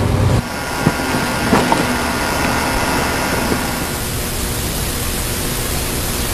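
Steady background hiss with a faint hum running under it, and no clear distinct event.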